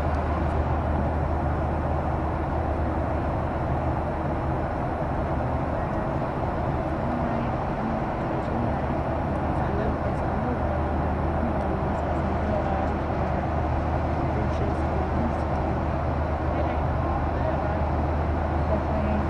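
Steady airliner cabin noise in flight: the constant drone of the jet engines and airflow, with a strong low hum. Indistinct voices can be heard faintly at times.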